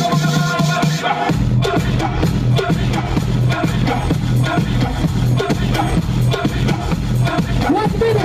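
DJ dance music played loudly over a stage PA system. A little after a second in, the mix changes and a heavy, steady bass comes in.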